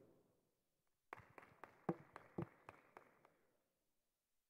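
Faint, sparse applause from a small audience: a run of claps, about four a second, starting about a second in and dying away before the end.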